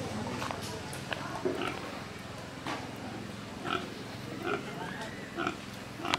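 Domestic pig grunting: short, separate grunts, about half a dozen spread over the few seconds.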